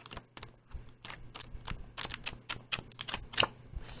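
Sheets of patterned scrapbook paper being flipped and handled, giving a run of light, irregular paper ticks and rustles.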